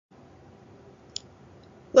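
Faint background hum with one short, sharp click a little over a second in.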